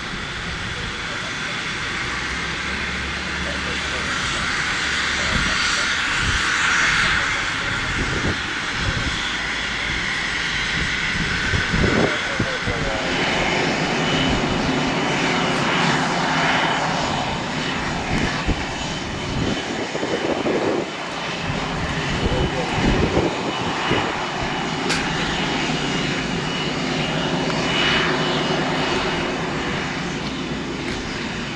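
Business jet's turbofan engines running, a steady rushing noise with a high whine that grows louder over the first few seconds, with scattered short knocks and indistinct voices.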